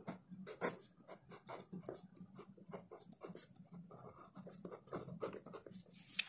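A pen writing on paper: faint, quick, irregular scratches of the pen strokes.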